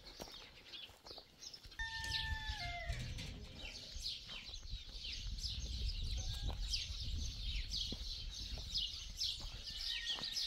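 Small birds chirping rapidly and continuously, with a short falling call from a farm animal about two seconds in. Wind rumbles low on the microphone.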